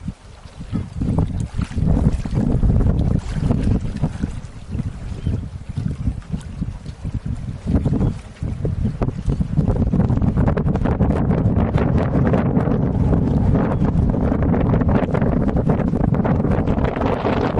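Wind buffeting the microphone, gusting in the first half with a brief lull just after eight seconds, then loud and continuous from about ten seconds in.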